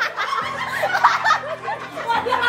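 Several people laughing together, over background music with held low notes.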